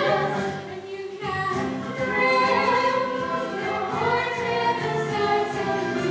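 Several young female voices singing a musical-theatre number together over instrumental accompaniment, with a short break in the singing about a second in.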